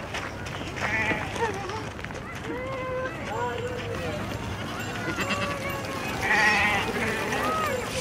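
A flock of sheep bleating, with wavering calls about a second in and again around six seconds in.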